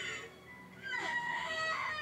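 Anime soundtrack playing: music, with a high voice rising and falling in pitch starting about a second in.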